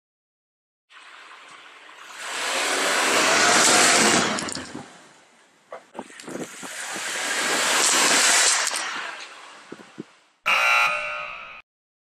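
A car driving past twice, each pass swelling up and fading away, then a short car-horn honk near the end.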